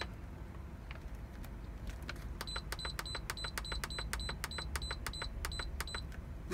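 3-quart Instant Pot control panel beeping as its button is pressed to set the cook time, a quick even run of short high beeps about four a second that starts about two and a half seconds in.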